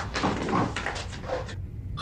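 Rustling and light knocks of a chair and objects on a wooden desk as a man gets up from his chair and reaches across the desk.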